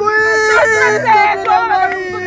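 A woman wailing in grief over a death: one long, high-pitched drawn-out cry, then shorter broken sobbing cries.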